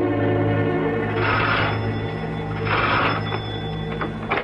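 A doorbell rings twice, two short rings about a second and a half apart, over held notes of dramatic music.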